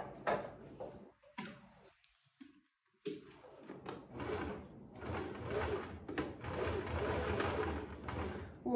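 Sewing machine stitching a seam through thick coat fabric and pocket lining. After a short quiet pause it starts about three seconds in and runs steadily.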